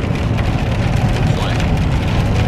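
Heavy rain hitting a moving car, heard from inside the cabin as a steady wash dotted with small ticks, over a low, steady road and tyre rumble.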